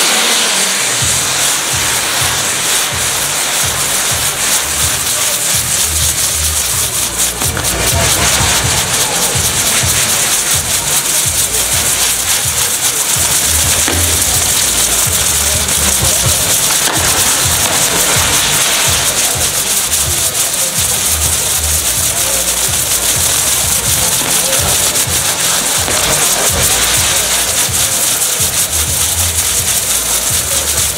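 Ground fireworks: spinning pyrotechnic wheels hissing and crackling steadily as they throw off sparks.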